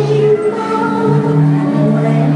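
Recorded soundtrack music with a choir singing long held notes, the pitch changing twice, played over a venue sound system.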